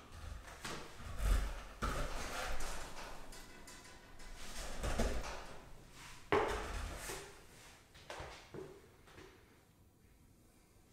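Knocks and thuds of bar muscle-ups done from a box: feet pushing off and landing on the box and the pull-up bar rig rattling as the body swings, echoing in the room. The sharpest knock comes about six seconds in.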